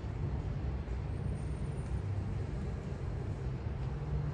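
Steady low rumble of downtown street ambience and distant traffic, with no single event standing out.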